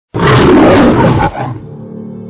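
A lion's roar, the MGM studio logo roar, very loud for about a second and then dying away. Soft held music tones follow near the end.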